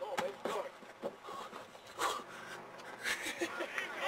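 Indistinct talk and calls from a group of football players and coaches, with a few short sharp sounds: one just after the start and one about two seconds in, as a lineman drives into a padded blocking dummy.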